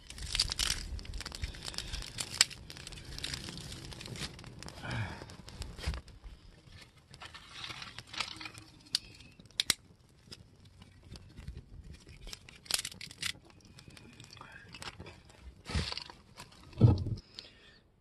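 Dry grass and leaf tinder bundle burning in open flame, crackling with sharp snaps and pops scattered throughout, busiest in the first six seconds. A single loud thump comes near the end.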